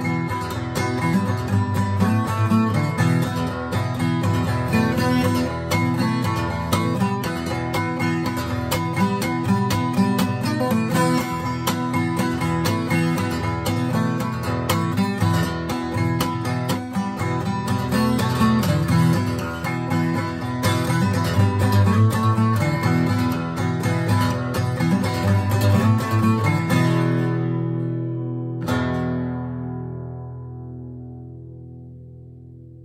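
Acoustic guitar played clawhammer style in DADGAD tuning: a steady bum-ditty rhythm of plucked melody notes and brushed strums. About three seconds before the end it stops on a chord, strikes it once more and lets it ring and fade.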